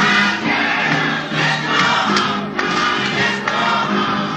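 Gospel choir singing with instrumental accompaniment, voices holding long notes over a steady bass line.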